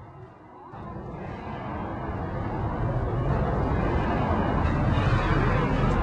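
A noisy rumble, heaviest in the low end, that starts about a second in and swells steadily louder for a couple of seconds, then holds.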